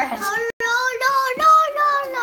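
A young child's high voice singing a drawn-out sing-song line, holding each note.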